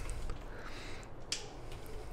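Quiet hand-held handling noise with one small sharp click a little over a second in.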